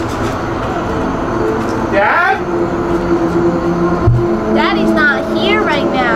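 Haunted-house soundscape: a steady low rumble with held drone tones under it. A wavering voice rises in pitch about two seconds in, and several more quick, wavering vocal sounds come near the end.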